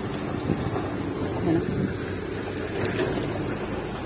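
Excavator diesel engines running, a steady low rumble.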